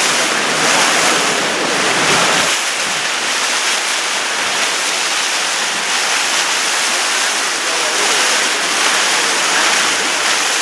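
Water rushing and splashing around moving outrigger canoes as paddle blades dig into the water stroke after stroke. Wind rumbles on the microphone for the first couple of seconds.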